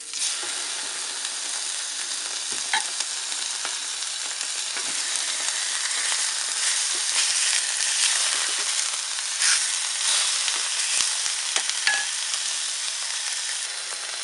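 Two marinated pork chops sizzling on a hot, oiled plancha griddle, the sizzle starting suddenly as the first chop goes down and then running on steadily. A few light knocks of a wooden spatula against the plate.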